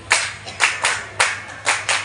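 A group of dancers clapping their hands in unison to a folk-dance beat: six sharp claps in two seconds, in an uneven rhythm with some coming in quick pairs.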